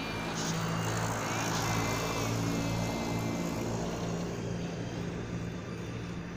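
Traffic noise from a passing vehicle, swelling to a peak about two seconds in and then fading, over a steady low hum. Faint wavering high tones sound through the first half.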